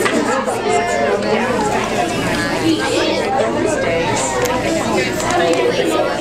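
Many children talking at once in a large room: steady, indistinct chatter with no one voice standing out.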